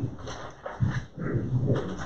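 A low, indistinct voice speaking in short phrases.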